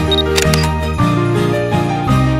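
Instrumental background music with Christmas jingles, and about half a second in a short high beep followed by a single-lens reflex camera's shutter click.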